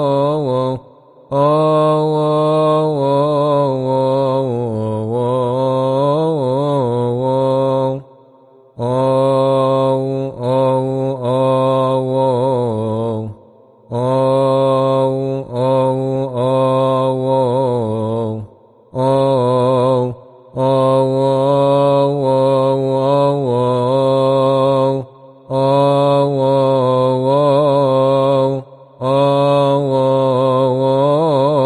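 Solo male deacon chanting a Coptic psalm verse to the liturgical melody. The line is slow and melismatic, its pitch wavering through long ornamented notes, and it breaks off in short pauses every few seconds.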